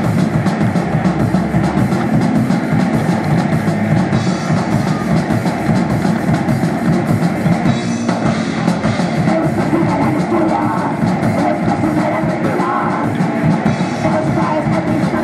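Live rock band playing: electric guitars, bass guitar and drum kit, with a steady run of drum hits throughout.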